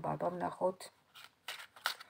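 A deck of tarot cards being shuffled by hand: three short swishes of cards sliding against each other in the second half.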